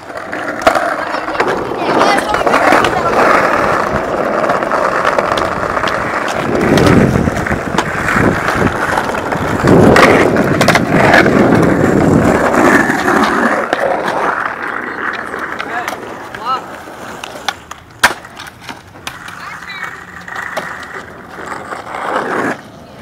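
Skateboard wheels rolling over rough concrete for about fifteen seconds, with a deeper rumble twice in the middle, then a few sharp clacks of a board.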